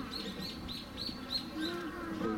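A small bird chirping: a quick run of short, high chirps, about five a second.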